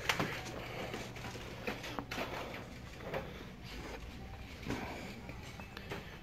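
Quiet store room tone: a steady low hum with a few scattered light clicks and knocks, and faint voices in the background.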